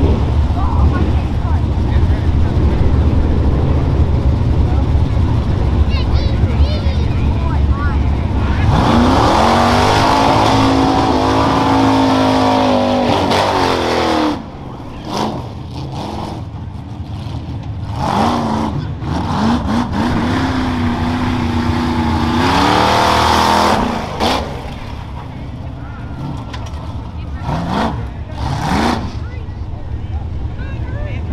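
Modified off-road pickup truck's engine rumbling low at the start, then revving hard as the truck launches down the dirt course about eight seconds in. The engine note climbs, drops off and climbs again several times as the driver gets off and back on the throttle.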